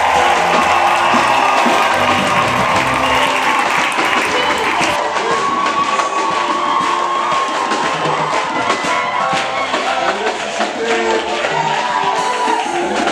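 Worship music with a church congregation clapping along and singing.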